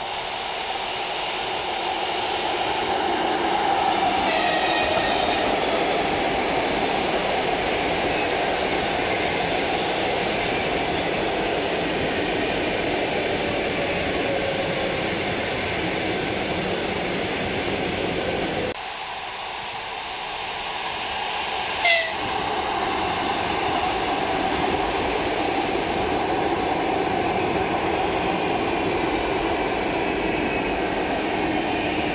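ЭП2Д electric multiple unit running past: a steady, loud rumble of wheels on the rails, with a horn sounding briefly about four seconds in. The sound drops off suddenly a little past halfway and builds back up, with a short sharp falling chirp a few seconds later.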